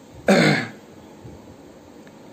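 A man clears his throat once, a single short rough burst.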